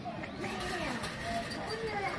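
Indistinct voices of several people talking in the background, steady and moderate in level.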